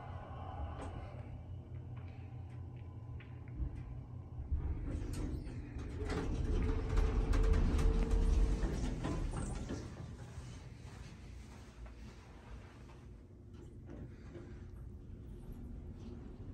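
Hydraulic elevator's doors sliding open on arrival, the door mechanism running with a steady hum and some clicks and rattles; the sound is loudest about halfway through, then settles to a low hum.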